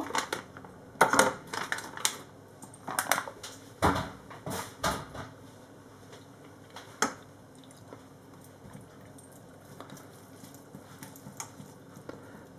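Food-prep handling at a stainless steel sink: a plastic bag of sauerkraut crinkling as it is emptied into a metal sieve, and a kitchen knife set down on the steel. There are a few sharp knocks and crackles over the first seven seconds, then only faint handling.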